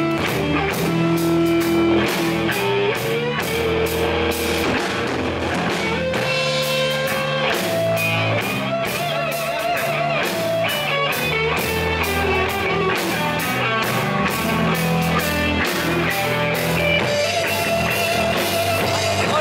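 A rock band playing live: electric guitar over a drum kit keeping a steady beat.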